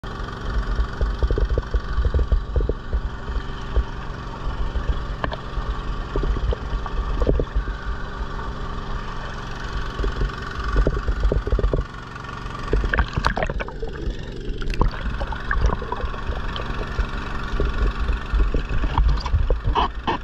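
Engine of a 4-inch gold dredge running steadily, with creek water rushing and splashing close to the camera.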